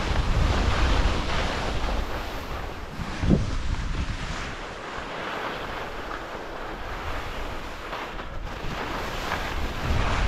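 Wind rushing over the camera microphone and the hiss of skis carving on packed snow during a downhill run, louder at the start and end and easing off in the middle. A single thump about three seconds in.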